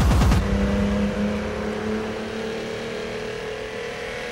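Racing car engine held at steady high revs, a constant drone that slowly fades, after a brief loud rush at the very start.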